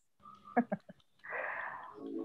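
A woman laughing softly: a few quick, short laugh pulses about half a second in, then a longer breathy laugh near the end.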